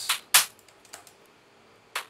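Sampled percussive clicks from a household object played back as a drum sound: three sharp, irregularly spaced hits, the loudest about a third of a second in with a short ring after it.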